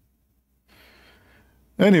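A pause, then a man's faint breath in through the mouth just before he starts speaking again near the end.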